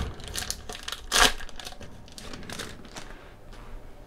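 Foil trading-card pack wrapper crinkling as it is handled and the cards are pulled out, with one louder crinkle about a second in.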